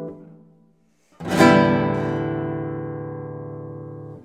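Nylon-string classical guitar: a ringing chord is damped at once, a brief silence, then about a second in a loud strummed chord rings out and fades slowly before being cut off at the end, the closing chord of the piece.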